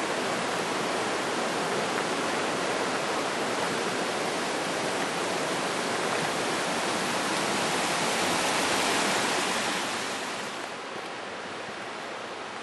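Steady rush of the gorge's stream (the Hășdate) flowing over rocks. It drops to a quieter, duller rush about ten and a half seconds in.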